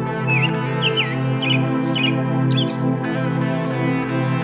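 Calm instrumental background music of steady held tones, with short bird chirps about five times in the first three seconds.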